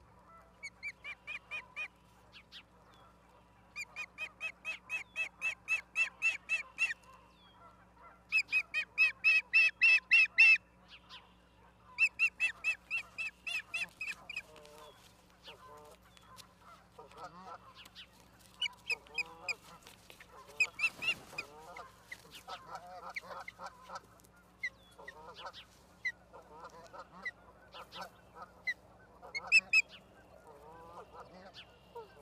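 Ospreys calling: fast runs of high, whistled chirps, about five a second, in four bouts over the first half, loudest around ten seconds in. In the second half, as one osprey flaps onto the other's back, there is a brief flutter of wings and quieter, lower wavering calls.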